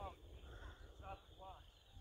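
Faint, distant voices calling out a few short times, over a low rumble at the bottom of the sound.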